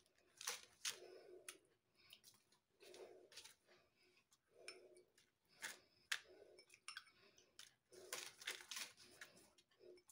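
Very faint soft strokes of a silicone pastry brush dabbing sugar water onto raw flatbread dough, with a few light clicks as the brush is dipped into a glass.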